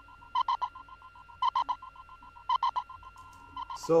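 Amapiano whistle sample playing back in a looped pattern, transposed down onto the song's key note: a quick burst of three short chirps on one steady pitch, repeating about once a second.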